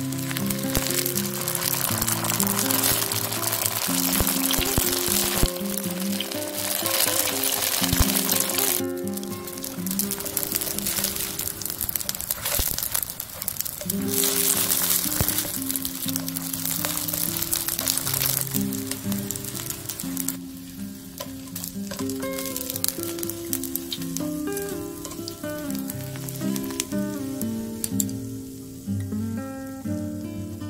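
Rice paper rolls sizzling as they fry in oil in a pan, with background music over them. The sizzle is strong for the first two-thirds and then thins out, leaving mostly the music.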